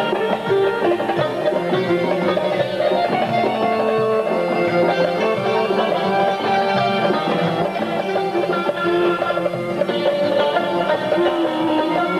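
Instrumental Central Asian folk music: a long-necked plucked lute playing a busy melody, with accordion accompaniment underneath.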